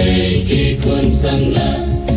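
A choir singing, sustained chords moving to a new chord about every half second.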